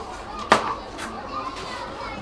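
Children's voices in the background, with a sharp knock about half a second in and a lighter click about a second in.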